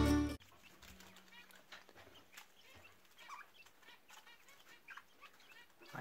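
Music cuts off sharply just after the start, then faint, scattered budgerigar chirps and chatter, over a faint steady low hum in the first few seconds.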